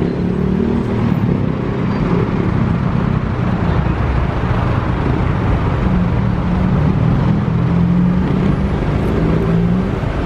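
City street traffic with car engines running close by: a steady low engine hum under general road noise, stronger in the second half.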